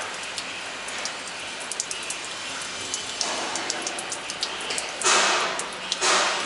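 Water leaking in thin streams from the open end of a large flanged steel pipe, falling and splashing as many small drips over a steady hiss of running water. It grows louder about five seconds in.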